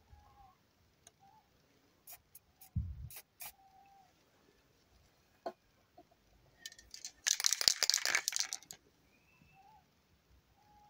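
Aerosol spray-paint can hissing in one burst of about a second and a half, late on, the loudest sound here. Before it come a few sharp clicks and a low thump of the can and cup being handled.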